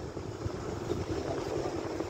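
Steady low rumble of a vehicle travelling on a rural road, with some wind on the microphone.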